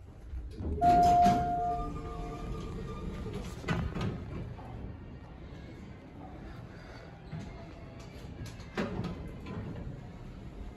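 Otis Series 2 elevator: an arrival chime rings once about a second in, a single tone that fades out over a second or so. Knocks from the elevator doors follow about four seconds in and again near nine seconds, over a low steady hum.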